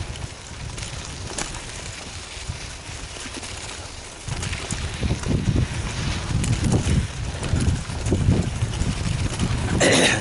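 Wind buffeting the microphone of a bike-mounted camera, with the bicycle's tyres rumbling and the bike rattling over a rough dirt singletrack. The rumble gets louder and bumpier about four seconds in, and a sharp clatter comes near the end.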